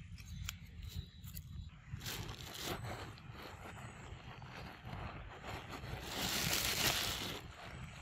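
Scraping and rustling noises with a few sharp clicks over a steady low rumble; a louder rustling hiss swells about six seconds in and lasts over a second.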